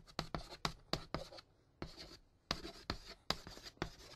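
Pen writing on paper: quick, irregular scratching strokes, several a second, with a brief pause partway through.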